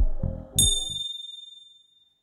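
Background music fading out, then a single bright bell-like ding about half a second in that rings on, its high tones dying away over a second and a half.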